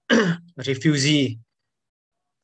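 A man clearing his throat and then making a short voiced sound of about a second, with dead silence on either side as the video-call audio cuts out.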